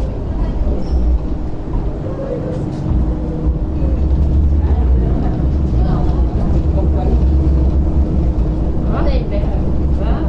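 Interior running noise of a Hong Kong MTR Light Rail car rolling into a stop: a low rumble from the wheels and running gear that strengthens about three seconds in, with a steady hum over it.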